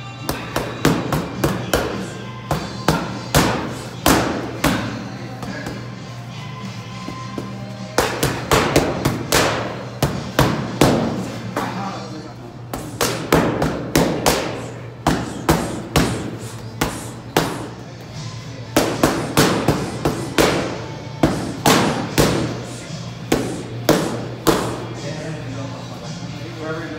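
Boxing gloves striking focus mitts in quick combinations of sharp smacks, the runs of punches separated by short pauses. Music plays underneath.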